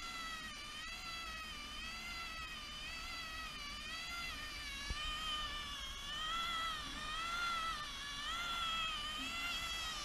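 Magnorail drive motor and its cogs running, a steady whine whose pitch wavers slowly up and down. It is the motor noise the layout's builder calls a noticeable problem.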